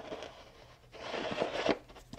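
Plastic soda bottle being twisted into a machined aluminium block: faint rubbing and crinkling of the plastic and its threads, strongest for under a second about a second in.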